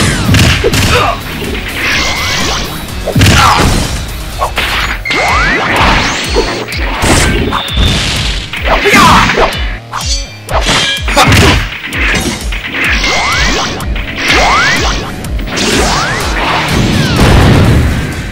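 Fight sound effects: a rapid, loud series of punches, hits and crashes with swishing swings, over background music.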